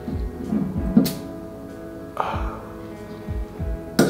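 Background music: held guitar tones over low drum hits, with a sharp click about a second in.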